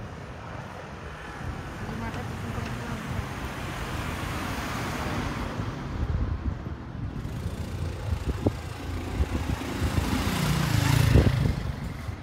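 Road traffic: vehicles passing along a street, with a broad swell of tyre and engine noise about four to five seconds in and a louder, lower passing engine near the end.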